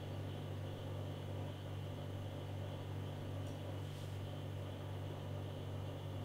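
A steady low electrical hum of room tone, with two faint small clicks about three and a half and four seconds in.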